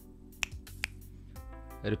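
Two sharp finger snaps about half a second apart, a check that the newly phantom-powered measurement microphone is picking up signal. Quiet background music runs underneath.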